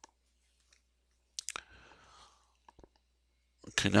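Mostly quiet: a few faint, sharp clicks and a soft breath, then a man starts speaking near the end.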